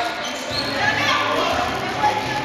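Rubber dodgeball bouncing on a hardwood gym floor, with several players talking in the echoing gym.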